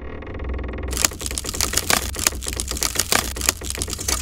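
Cartoon sound effect of a spinning-disc flying contraption: a steady low hum with fast, irregular clattering clicks that set in about a second in.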